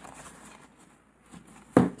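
Faint rustling of a thick acetate planner divider and black card sheet being handled and turned over.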